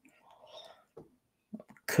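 A woman's faint, breathy whisper-like murmur in a pause between sentences, with a small click about halfway, then her speaking voice starting just before the end.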